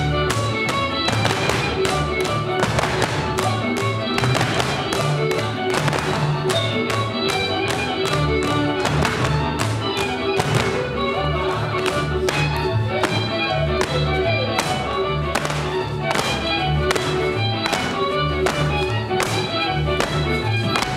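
Lively folk-dance music with a bass line, overlaid by the dancers' boots stamping and clicking sharply on the stage floor in time with it, several hits a second.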